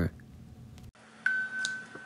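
A single steady electronic beep, one high tone about three-quarters of a second long, starting suddenly a little over a second in after a stretch of quiet room tone.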